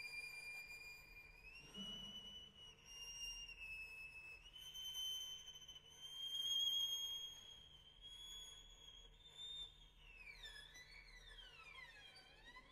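Quiet, very high sustained violin notes, stepping upward in pitch a few times, then sliding string glissandi falling and rising across each other near the end.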